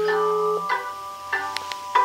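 Samsung Android phone ringing for an incoming WhatsApp call: its ringtone plays a tune of chiming notes through the phone's speaker.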